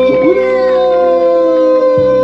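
Live Black Sea highland folk music: a long held sung note that slowly falls in pitch, over a steady unchanging drone from the accompaniment.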